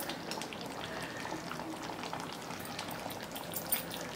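Chicken curry simmering in a clay pot: a steady bubbling sizzle with small pops.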